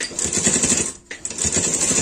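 Domestic straight-stitch sewing machine running fast, a quick rattle of needle strokes as it stitches through fabric. It stops briefly about a second in, then starts again.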